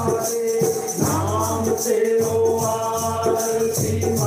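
Male voices singing a Punjabi devotional bhajan to live accompaniment, the melody held over a steady low drone, with a shaker-like percussion rattle keeping a fast, even beat.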